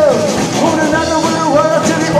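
A live rockabilly band playing: electric guitars over a drum kit, with short melodic lines that bend up and down.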